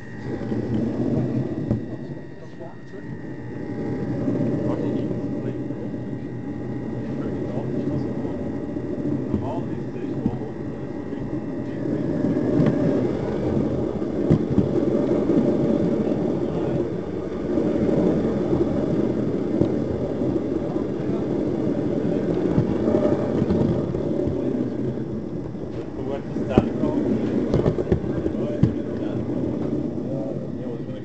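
Steady hum and rolling rumble of a model train's motor car running along the track, carried straight into the camera clamped to it by a magnet, with a few sharp clicks along the way.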